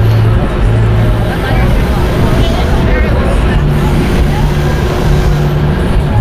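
Steady low mechanical hum and rumble, like an idling engine or generator, with faint voices of a crowd behind it.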